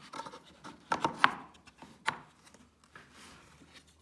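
Light handling knocks and scrapes as a pine block and a metal kerfmaker jig are shifted and set down on a plywood saw-sled base, with a few sharp taps about a second in and again near two seconds.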